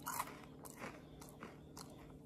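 A man chewing close to the microphone: a handful of faint, scattered crunching clicks.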